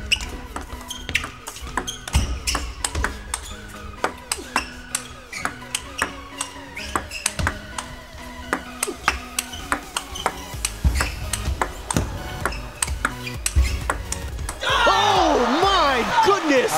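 A long table tennis rally: the ball clicks sharply off rackets and table dozens of times at a fast, uneven pace, over background music. Near the end the rally stops and a loud burst of voices takes over as the point is won.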